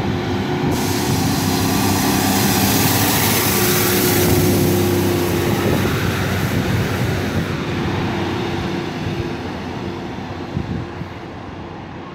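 British Rail Class 150 Sprinter diesel multiple unit 150267 running past along the platform: the steady note of its underfloor Cummins diesel engines over the rumble of wheels on rail, loudest about four seconds in, then fading as it moves away.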